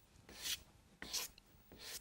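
Chalk rubbed across paper in three short, evenly spaced scratching strokes, as colour is filled in.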